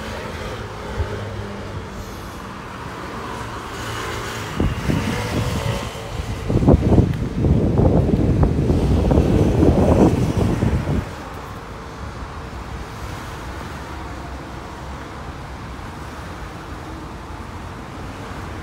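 Steady road traffic, with a red double-decker London bus's engine passing close by, loudest for about four seconds midway before dropping back to the traffic hum.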